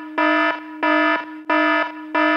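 Repeating electronic alarm-like beep: one steady, buzzy note pulsing on and off about three times in two seconds, each beep about half a second long.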